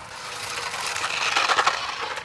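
Toy RC car's small electric motor and gears whirring as its wheels churn through loose sand, a gritty crunching that builds and is loudest about one and a half seconds in.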